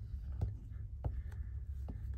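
Glue stick being rubbed over a paper page, with several light ticks and taps against the table, over a steady low hum.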